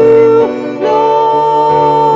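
Live worship band: a woman singing long held notes into a microphone over electric guitar, moving to a new note about half a second in after a short break.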